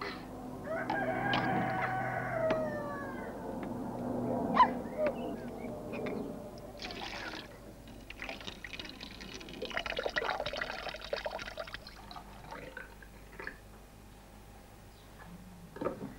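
Water poured and splashed in a plastic tub, in bursts about seven seconds in and again for a couple of seconds after that, with a sharp knock a few seconds in. A high, gliding call that falls in pitch sounds in the first few seconds.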